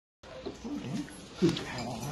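Dogs whining and grumbling low, with one louder short cry a little past the middle and a muffled voice mixed in.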